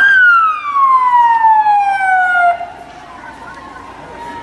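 Siren sounding one long tone that slides steadily down in pitch over about two and a half seconds, then cuts off.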